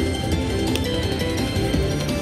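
Slot machine's electronic win-celebration music, a run of chiming notes with light clinking, played as a bonus win is credited.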